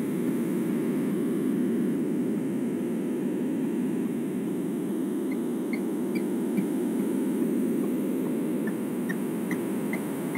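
Steady electronic static on the line: an even, dull rushing noise with no speech, with a few faint short high peeps in the second half.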